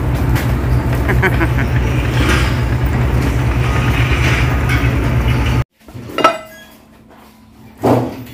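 Steady low rumble of a minibus (coaster) engine heard from inside the cabin, with faint voices. It cuts off abruptly after about five and a half seconds to a quiet room, where dishes clink sharply twice.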